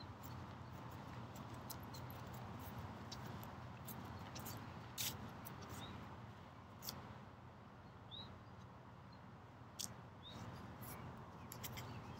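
Quiet outdoor ambience: a low steady rumble with a few faint, short bird chirps and several sharp clicks scattered through.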